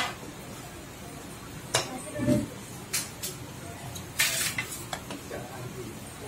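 Clinks and knocks of dishes and utensils, about half a dozen separate strikes, with a brief rattle about four seconds in.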